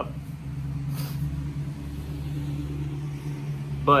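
A steady low mechanical hum, even in level throughout.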